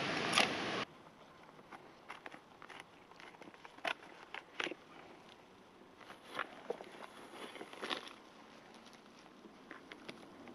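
A loud steady rushing noise cuts off under a second in. Then come quiet scrapes and slicing strokes of a TFK T8 fixed-blade knife shaving an old birch log: short, sharp strokes a second or so apart.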